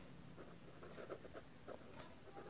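Faint scratching of a pen writing on paper, a run of short strokes.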